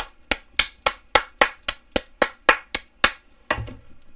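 One person clapping her hands, about a dozen sharp claps at roughly four a second, stopping about three seconds in and followed by a brief muffled sound.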